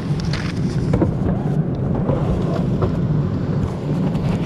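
Steady low rumble of an airliner cabin during boarding, with rustling and a few light knocks from the handheld camera brushing against clothing.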